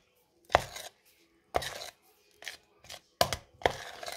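A spoon stirring chopped onions and honey in a plastic container, scraping and knocking against its sides in about six irregular strokes.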